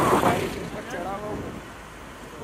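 Voices in the first second over the steady running and road noise of a moving jeep, heard from on top of it; the sound drops to a quieter rumble in the second half.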